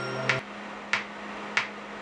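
A programmed R&B beat plays through studio monitors. The held bass and chord notes drop out about half a second in, leaving only sharp layered clap and snare hits about two-thirds of a second apart over a faint steady low tone.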